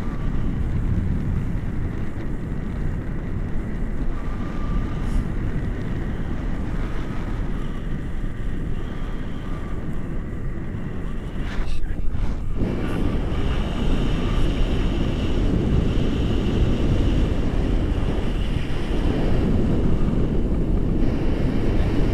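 Wind rushing over an action camera's microphone on a paraglider in flight: a steady, low, dense rush of air noise. The noise dips briefly about halfway through, then comes back fuller and a little louder.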